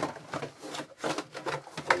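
Hands handling trading-card packaging on a tabletop: an irregular run of rustles and light knocks.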